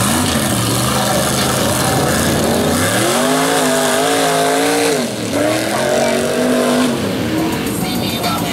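Lifted pickup mud truck's engine revving hard under load as it churns through a mud pit, over a steady splash of mud and water from the tires. The engine note climbs about three seconds in, holds with a wavering pitch, drops just after five seconds, then rises again until near the end.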